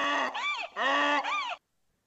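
A played-back sound effect: two honking, pitched calls, each held briefly and ending in a rising-and-falling wobble, stopping about one and a half seconds in.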